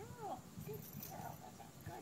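A person's voice with a rising-and-falling, sing-song pitch near the start, followed by faint, indistinct sounds.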